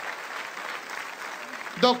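Audience applauding steadily, with a man's voice starting near the end.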